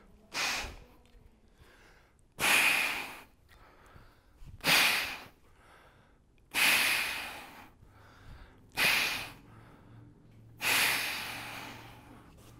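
A man breathing forcefully through kettlebell clean-and-press reps: a short sharp breath followed by a longer, fading one, repeating about every four seconds, three times over.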